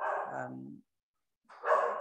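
Speech only: a man's voice saying "and um", trailing off, then a short gap before he speaks again near the end.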